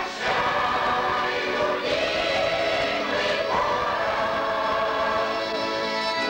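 Mixed choir of elderly women and men singing, holding long notes that move to new pitches about two seconds in and again about three and a half seconds in.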